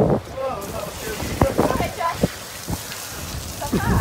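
A steady hiss like rain or spray, getting stronger about half a second in, with a few sharp clicks scattered through the middle.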